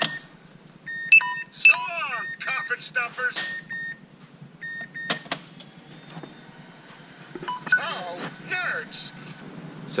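Recorded greeting clips of a cartoon robot's voice played through a car-dash tablet's small speaker, with short electronic beeps among them; one clip about a second in and another near eight seconds.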